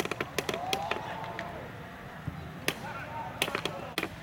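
Players shouting across an amateur football pitch: one long call in the first second or so and shorter ones later. Scattered sharp knocks come in quick clusters at the start and again after the middle.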